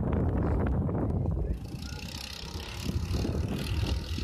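Go-kart engines running on the track. A loud rumble over the first second and a half drops away, leaving the karts' fainter buzz and wind on the microphone.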